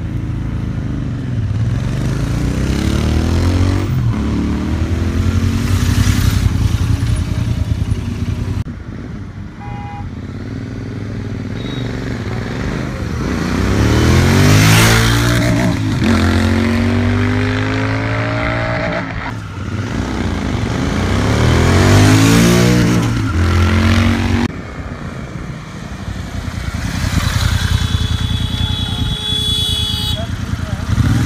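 Royal Enfield 650 parallel-twin motorcycles accelerating along the road, the engine note rising in pitch again and again as the bikes pull through the gears. There are several separate runs, with abrupt breaks between them.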